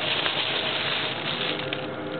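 Thin plastic shopping bag rustling and crinkling as it is set down on the floor with a cat inside it.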